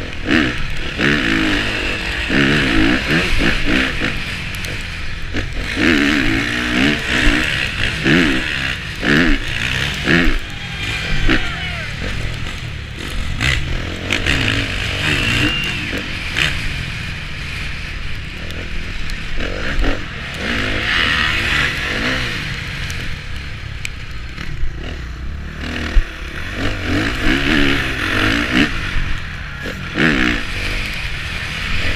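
A KTM four-stroke motocross bike's single-cylinder engine, heard onboard, revving hard and easing off again and again, its pitch rising and falling through corners and straights.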